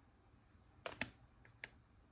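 Plastic pancake-mix bag handled in the hand, giving three short crackly ticks: two close together a little under a second in, and one more about half a second later.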